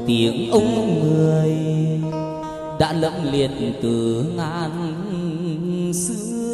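Chầu văn (hát văn) singing: a male voice holding long, wordless melismatic notes with wide vibrato, over a plucked đàn nguyệt moon lute. A sharp click sounds about three seconds in.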